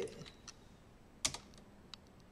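Two clicks on a computer keyboard, about two-thirds of a second apart, the first the louder, in an otherwise quiet room.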